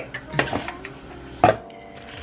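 Background music with two sharp knocks from a cardboard product box being handled on a counter, one about half a second in and a louder one about a second and a half in.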